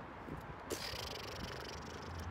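A person breathing out audibly: a soft exhaled hiss begins under a second in and fades, over faint background noise.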